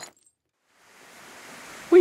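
Silence at an edit: the surf and wind sound cuts off abruptly at the start, then after about half a second of nothing a faint, even rushing noise fades up gradually.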